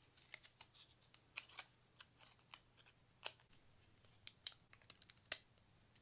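Thin clear plastic packaging being folded and creased between the fingers: faint, irregular crinkles and small sharp clicks.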